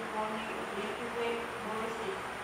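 A woman's voice reciting aloud in short phrases held on nearly level pitches.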